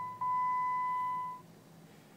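Jeep Patriot's electronic warning chime: a steady high beep that fades away, with a second beep starting about a quarter second in, lasting a little over a second and then stopping.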